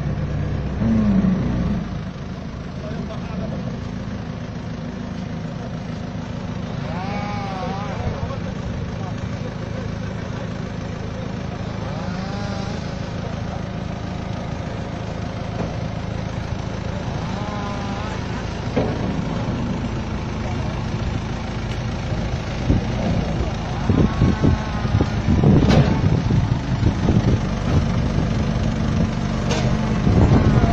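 A large vehicle's engine running steadily with a low hum, getting louder and more uneven in the last several seconds.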